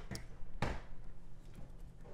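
A few light knocks and taps of craft tools and paper pieces handled on a tabletop, with one louder knock a little over half a second in and faint small ticks after it.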